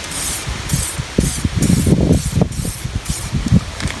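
Aerosol can of 2K clear coat spraying in a run of short bursts, roughly two a second, the spray fanning out as it passes over the panel. Wind buffets the microphone underneath.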